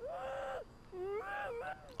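Two short, high-pitched cartoon voice calls from the episode playing on the soundtrack, quieter than the reactors' talk: one held briefly at the start, a second rising and wavering about a second in.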